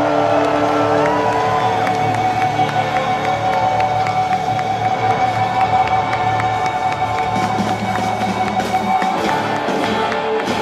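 Live rock band holding a long, sustained closing chord, with one high note ringing steadily and the low bass notes dying away about eight seconds in, while the crowd cheers and whoops, louder toward the end.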